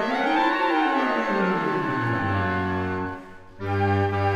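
Woodwind octet of piccolo, flutes, clarinets, bass clarinet and baritone saxophone playing a line that rises and falls over held chords. The music breaks off briefly about three seconds in, then a loud sustained chord comes in.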